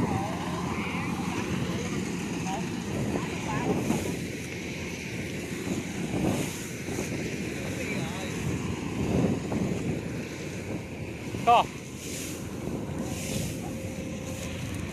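A rice combine harvester runs steadily nearby as a low engine drone, with wind on the microphone and faint voices. Late on there is one short, sharp, high cry, the loudest moment.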